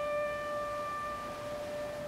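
A single piano note, struck just before and left ringing through a pause in the singing, slowly fading.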